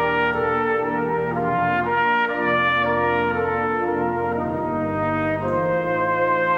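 A trumpet plays a melody, one note after another, over held chords from the 96-rank Ruffatti pipe organ.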